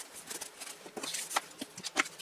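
Hands handling thin paper and a lace ribbon on a tabletop: light rustling and small scrapes, with a sharper tap about halfway through and another at the end.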